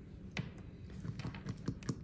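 Handling noise: a string of light, irregular clicks and taps, about three or four a second, as a nail polish bottle and long fingernails touch a steel stamping plate.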